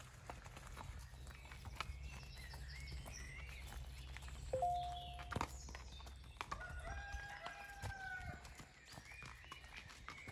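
Horse walking on a dirt and gravel track, its hooves clip-clopping irregularly, with birds singing. A rooster crows once, a long call that falls away at its end, about seven seconds in.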